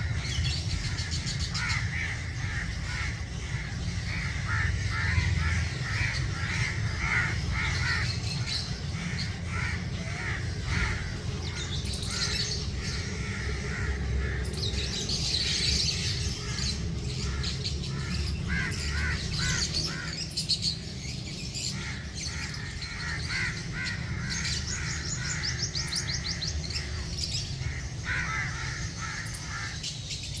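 Birds calling outdoors: a run of short, repeated caw-like calls throughout, with higher chirping in bursts, over a steady low rumble.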